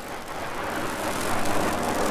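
A steady rushing noise that slowly grows louder.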